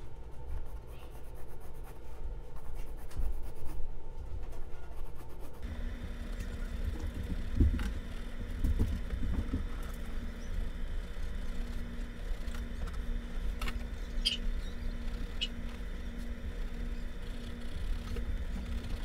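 Watercolor pencil scratching on a stretched canvas as petal outlines are sketched, over a low background rumble. From about six seconds in a faint hum pulses on and off, with a few light ticks near the end.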